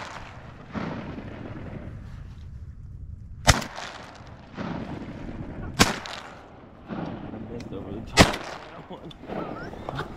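Three shotgun shots, a little over two seconds apart.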